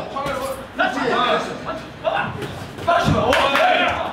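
People's voices calling out, with one heavy thump about three seconds in.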